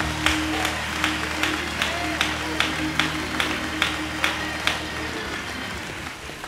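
Gospel music with held chords, and hands clapping in time about two and a half claps a second. The music thins and fades in the last second.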